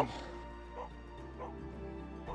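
Soft background music: sustained held tones with a few short, higher notes.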